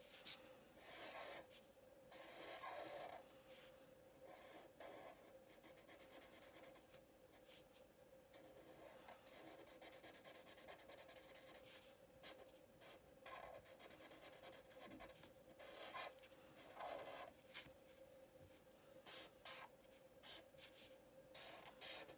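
Felt-tip permanent marker drawing on paper, faint short scratchy strokes with pauses between them as circles and small features are drawn, over a faint steady hum.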